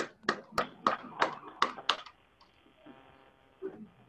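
Hand clapping: about ten sharp claps at roughly three a second, stopping about two seconds in.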